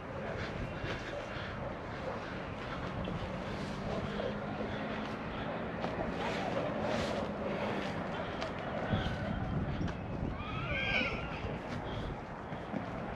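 Open-air background noise with a faint steady low hum through most of it. Near the end comes one short rising-and-falling call.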